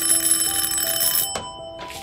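An electric doorbell ringing continuously, then cutting off sharply about a second and a half in, over steady held tones.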